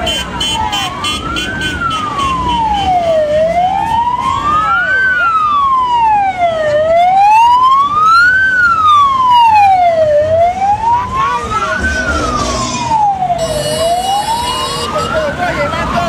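Vehicle siren wailing, its pitch sweeping evenly up and down about once every three and a half seconds, over crowd and traffic noise.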